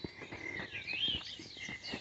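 Wild birds chirping and singing in the background, with a few faint small clicks.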